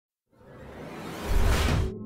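A whoosh sound effect for a logo intro: a rising rush of noise that swells with a deep rumble underneath and cuts off abruptly just before two seconds in.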